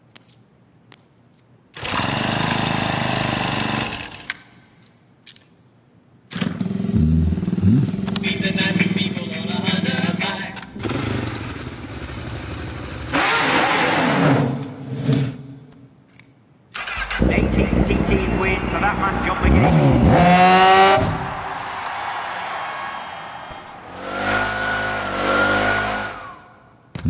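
A string of edited sound effects: mechanical whirs and clicks, then vehicle engines starting and revving, the pitch climbing sharply in a rev about two-thirds of the way through.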